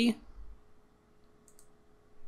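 A couple of faint computer mouse clicks about one and a half seconds in, over low room tone with a faint steady hum.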